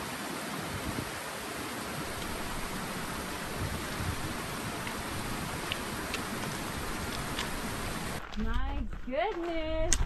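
Shallow mountain creek running over rocks: a steady rushing hiss with a few faint clicks through it, cutting off suddenly about eight seconds in.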